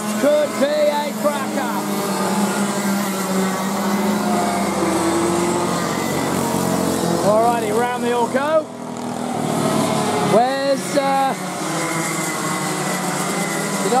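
Several racing kart engines running as the karts lap the track, a steady drone with engine notes rising and falling as they pass. Short stretches of talking come in near the start and around the middle.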